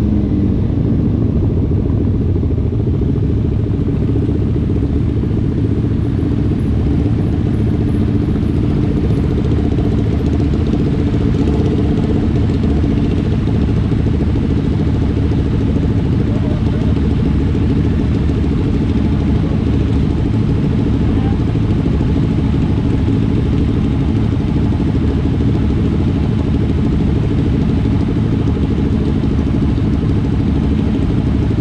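Motorcycle engines idling steadily. Right at the start the engine pitch falls as the bike slows, then several sport bikes hold at idle together.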